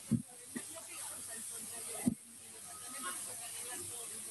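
Steady high hiss of a room microphone feed, with a few faint low thumps, the clearest just after the start and about two seconds in.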